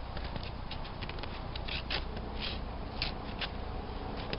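Footsteps crunching on icy snow, about a dozen short irregular crunches, over a low steady rumble.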